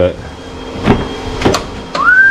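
Car door being opened on a 2007 Citroën C1: two sharp clicks of the handle and latch, about half a second apart.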